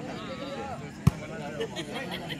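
A volleyball being struck by a player's hand: one sharp slap about a second in, over the chatter of voices around the court.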